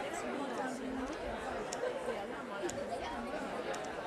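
Quiet audience chatter, low voices talking among themselves with no music playing.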